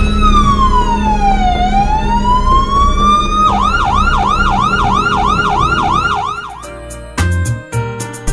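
Electronic emergency-vehicle siren: a slow wail that falls and then rises again, switching about three and a half seconds in to a fast yelp of about three cycles a second. The siren fades out near the end as music comes in.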